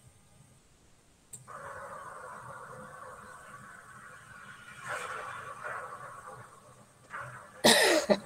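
A person coughs once, loudly, near the end, over a faint steady background sound.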